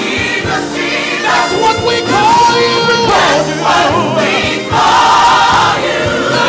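Live gospel singing: two male lead vocalists on handheld microphones sing long, gliding runs over a choir and band accompaniment.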